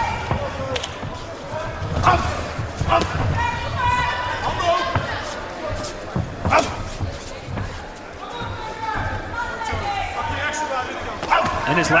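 Sharp thuds and slaps of gloves and shins landing and feet working on the ring canvas during a kickboxing bout, coming irregularly every second or two. Shouting voices from the corners and crowd run underneath.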